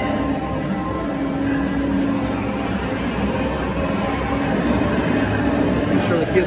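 Video-game arcade ambience: game-machine music and electronic sound effects over a steady drone of machines.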